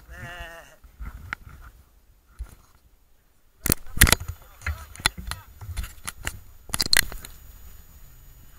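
Handling noise from a small action camera being gripped by hand: a string of sharp knocks and clicks from fingers against the camera's housing and microphone, starting about halfway through and loudest around the middle. Before them, a brief wavering voice is heard.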